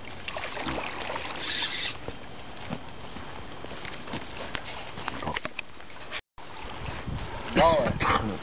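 Water sloshing and splashing at the bank as a hooked carp is played close in, with a brief louder splash about a second in.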